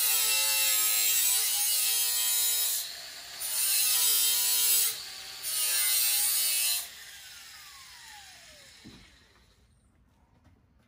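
Hand-held grinder cutting into a C-10 pickup's steel frame rail to notch it over the rear axle: three cutting passes of a few seconds each with short pauses between. Near the end the tool is let off and its motor winds down in a falling whine over about two seconds.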